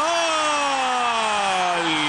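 A television football commentator's long drawn-out goal cry, one held note that falls slowly in pitch, over the steady noise of the stadium crowd.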